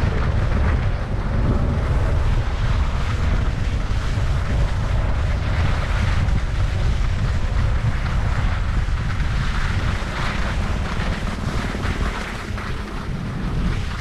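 Wind buffeting a body-worn action camera's microphone on a downhill ski run, with the steady scrape of skis over packed, groomed snow.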